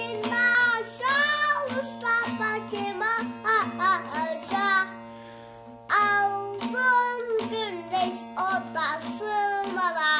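A young child sings in short phrases while strumming a bağlama (Turkish long-necked saz) with a plectrum, the strings ringing steadily under the voice. About five seconds in there is a brief pause, then the singing and strumming start again.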